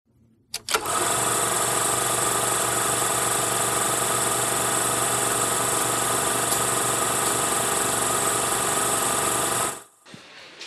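Film projector running with a steady mechanical rattle. It starts with a couple of clicks about half a second in and cuts off suddenly near the end.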